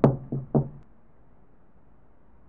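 Knuckles knocking on an apartment door: three quick knocks in the first half second, each with a short low ring.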